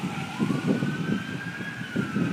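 Emergency vehicle siren in a slow wail, its pitch dipping and then rising, over low rumbling buffets on the microphone.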